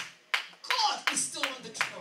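A handful of sharp hand claps, unevenly spaced, mixed with excited speech in the church.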